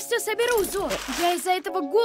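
A cartoon character's voice talking, in short broken phrases.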